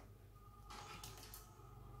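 Near silence: faint rustling and light clicks of audio cables being handled behind a DAC, a few short strokes in the middle, over a low steady hum.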